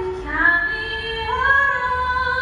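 A woman singing solo into a microphone, carried over a ballpark's public-address system. She holds one long note, then steps up to a higher held note about halfway through.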